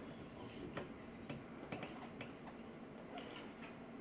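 Light, irregular clicks and taps, about eight of them spread over a few seconds, over a low steady room hum.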